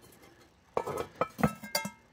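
Claw hammer knocking and clinking against a cast iron Dutch oven lid and its handle as the lid is hooked and lifted, starting about three-quarters of a second in, with a short metallic ring near the end.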